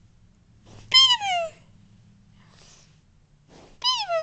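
Six-month-old baby squealing during a peekaboo game: two high-pitched squeals that fall in pitch, one about a second in and another near the end.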